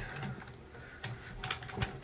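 Pull-down projector screen being raised on its roller: a quiet mechanical rustle with a few light clicks in the second half.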